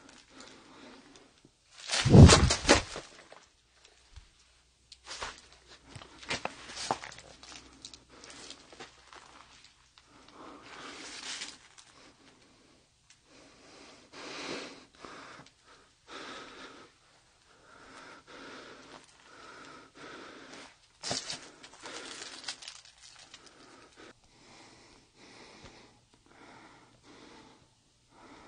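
Footsteps and rustling on dry fallen leaves and snow, with a person breathing close to the microphone. A loud clatter about two seconds in is the loudest sound.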